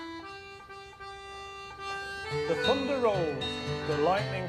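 Ballone Burini piano accordion playing sustained notes of a traditional folk song. About halfway in a voice starts singing and low accompanying notes come in, and the music grows louder.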